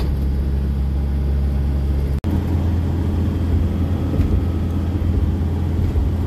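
Heavy truck's engine and road noise heard from inside the cab while driving, a steady low drone. It breaks off for an instant about two seconds in, then carries on at a slightly different pitch.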